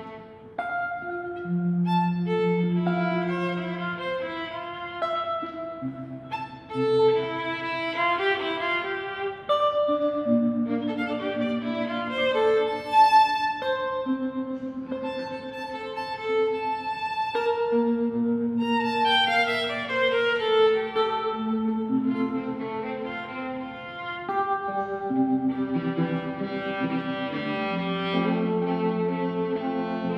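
Live duet of violin and hollow-body electric guitar playing a slow instrumental piece of held notes and chords. About two-thirds of the way through, the melody slides downward.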